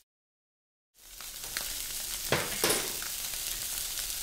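Halibut fillets searing in hot oil in a sauté pan: a steady sizzle that fades in after about a second of silence, with a few light knocks in its first half.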